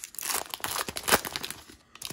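Foil wrapper of a trading-card pack being torn open and crinkled by hand: a run of sharp crackles, loudest about a second in.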